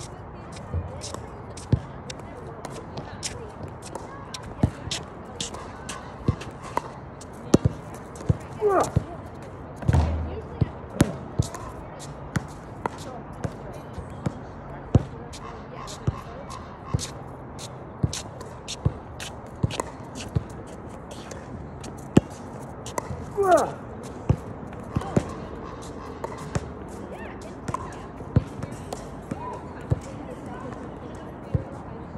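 Basketball bouncing again and again on an outdoor court in short, sharp hits at an uneven pace, with one heavier thump about ten seconds in.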